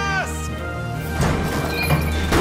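Background music with a steady low note, under the tail of a long shouted 'up'. About a second in, a noisy rushing burst comes in and builds: the sound effect of the puppet being fired out of the launch tube.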